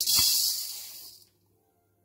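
Dry skinned urad dal poured from a bowl into a stainless steel pan: a rush of hard grains rattling onto the metal that starts sharply and dies away after about a second.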